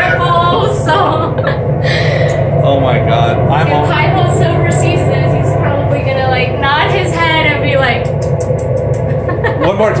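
Voices talking, unclear to the speech recogniser, over a steady low hum, with a quick run of light clicks near the end.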